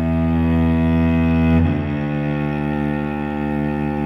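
A cello playing a slow accompaniment line: long bowed low notes, moving to a new note about one and a half seconds in.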